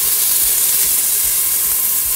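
Onions and garlic sizzling in hot olive oil in a stainless steel pot, a steady hiss, with jarred marinara sauce just poured in.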